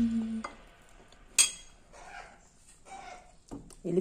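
A metal spoon strikes a glass plate once, a sharp clink about a second and a half in, followed by a few faint softer sounds.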